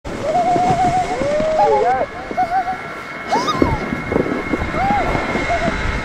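A young child giggling and squealing in a high, sing-song voice while being towed on a snowboard, over the steady scrape of snowboards and skis sliding on snow.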